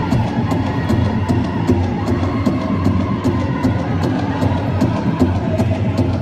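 Powwow big drum struck in a steady, even beat by a drum group, with their high-pitched unison singing carried over it.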